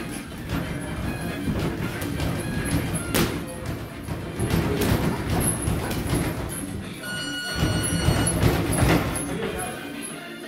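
Music and voices in the background of a boxing gym, over the knocks of gloves and shuffling footwork of two boxers sparring in the ring, with a sharp knock about three seconds in.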